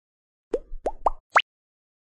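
Logo-intro sound effect: four quick blips, each a short upward pitch sweep, each higher than the one before, all within the first second and a half.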